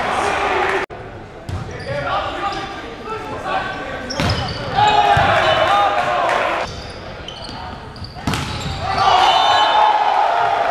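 Voices of players and spectators echoing in a gymnasium during a volleyball match, with a few sharp hits of the volleyball.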